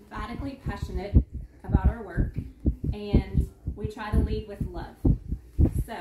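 A woman speaking in a small room, with repeated short low thumps under her voice.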